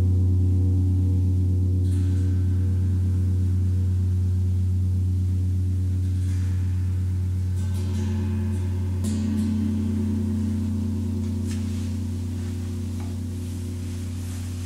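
Large gong ringing with a deep, steady hum that slowly fades. About halfway through, a hand touching the gong's face brings up a brighter overtone, with a few faint taps.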